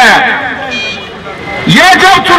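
A man's speech amplified through a microphone and horn loudspeakers. It breaks off for about a second in the middle, when only street noise and a brief high-pitched tone are heard, then resumes near the end.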